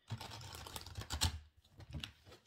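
A rapid, irregular run of light clicks and rustling, stopping about a second and a half in.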